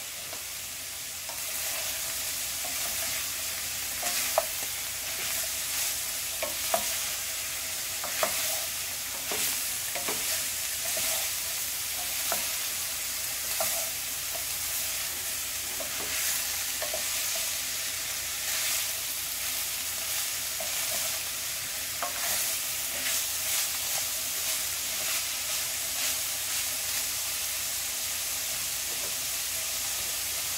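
Sliced bitter melon and ground beef sizzling in a frying pan while a wooden spatula stirs them, with irregular sharp knocks of the spatula against the pan. The sizzle grows louder about a second and a half in as the stirring begins.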